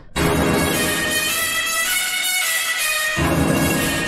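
Harsh, buzzy synth bass patch ('brass low #2') playing a sustained phrase that imitates a brass hit. It is a bass sound given heavy reverb, overdrive and EQ to make it harsher. Its low end drops out for about a second midway, then comes back.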